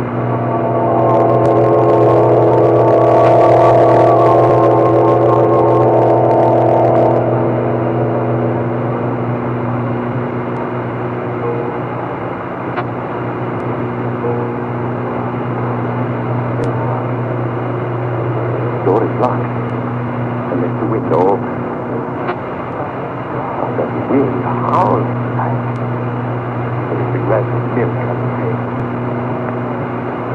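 Organ music bridge in a radio drama: a low drone of held notes throughout, with a louder, wavering chord swelling over it in the first few seconds and dying away by about eight seconds in.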